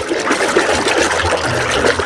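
Water splashing steadily as a hand swishes a plastic toy around in a basin of soapy, foamy water to wash it.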